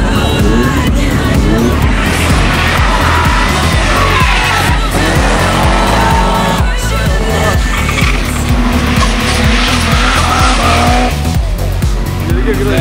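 Drift car engine revving up and down as the car slides sideways, with its tyres squealing, over background music with a steady beat.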